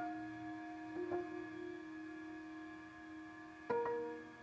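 Korean traditional orchestra in a quiet passage of a geomungo concerto: soft sustained notes hold underneath while sharp plucked-string notes ring out about a second in and again near the end.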